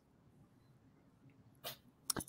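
Near silence on a video-call recording, with one brief soft burst of noise about three-quarters of the way through.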